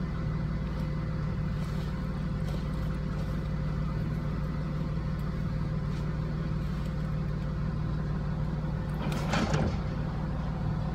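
Truck engine idling steadily, with a brief hissing or rattling burst near the end.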